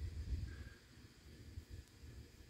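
Faint low rumble on the camera's microphone, a little stronger in the first half second and then quieter.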